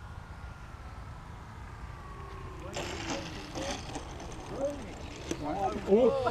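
Faint whine of an electric RC aerobatic model plane's motor and propeller, falling slowly in pitch as it throttles back and comes in. About three seconds in, a brief rustle, then people's voices and laughter.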